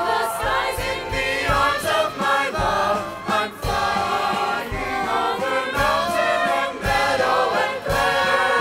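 A stage-musical chorus singing with musical accompaniment, several voices together, with low thuds recurring irregularly beneath.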